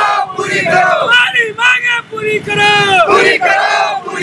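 A crowd of young men chanting protest slogans together in short shouted phrases, repeated one after another.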